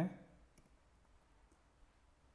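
A few faint, separate keystrokes on a computer keyboard as captcha characters are typed, after a man's word ends right at the start.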